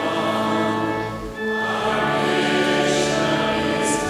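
A congregation sings a hymn together over sustained pipe organ chords. The sound drops briefly a little past a second in, between sung lines.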